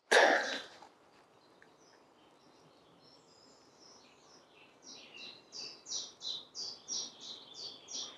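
A short breathy burst of noise at the very start, then a songbird singing in woodland: soft high warbling that builds into a run of repeated high notes, about two a second, over the last few seconds.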